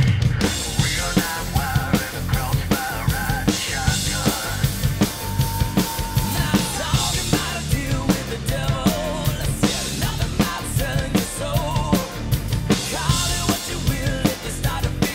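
Rock drum kit, a custom Risen Drums kit with Sabian cymbals, played along to a full-band rock song recording. The drums and band come in together at the start with a heavy hit, then keep a steady driving rock beat with kick and snare under guitars.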